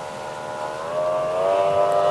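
Outboard racing boat's engine running at high revs as the boat planes past, a steady whining note that rises in pitch and grows louder about a second in.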